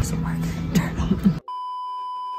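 Background music under a short spoken line, cut off about one and a half seconds in by a steady electronic test-tone beep, the sound effect played over TV colour bars.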